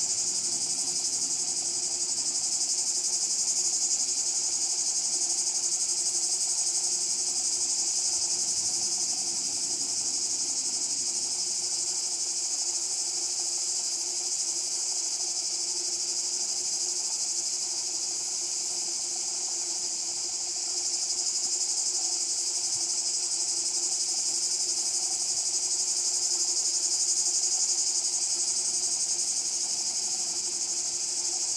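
A steady chorus of insects: one continuous high-pitched buzz that does not break.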